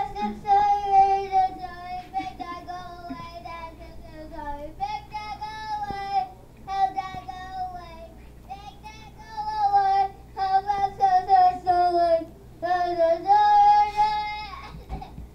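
A young child singing in a high voice, drawing out long notes in phrases of a couple of seconds each, with short breaks between.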